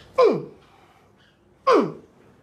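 Two short, sharp cries of pain from the man being treated, each falling steeply in pitch, about a second and a half apart, as the bone-setter presses and works on his knee.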